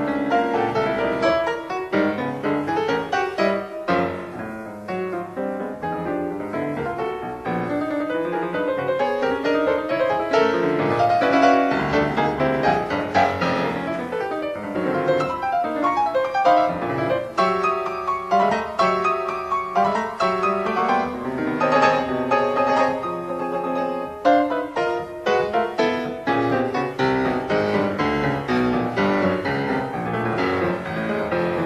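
Solo piano playing a toccata: a dense, unbroken stream of notes with no pauses.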